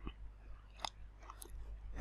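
A pause that is nearly quiet: a few faint short clicks over a low steady hum.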